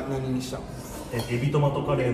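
Chopsticks and tableware clinking against bowls and trays as people eat, with two sharp clinks, under men's voices.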